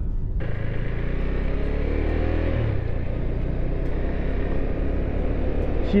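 Steady riding noise of a moving vehicle: engine rumble with road and wind rush, setting in about half a second in.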